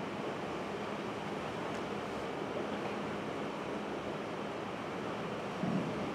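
Steady hiss of room background noise with a low steady hum, and a faint stroke or two of a marker writing on a whiteboard.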